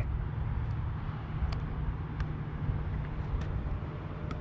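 Steady low rumble of distant road traffic, with a few faint ticks.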